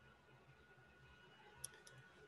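Near silence: room tone, with two faint, sharp clicks close together near the end.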